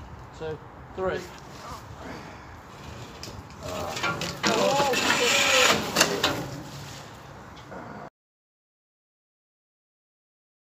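Men straining to haul a heavy magnet catch up on a rope over an iron bridge railing: short grunts and strained vocal noises, with knocks and rough scraping of rope and metal. The noise is loudest from about four to six seconds in, then the sound cuts off abruptly about eight seconds in.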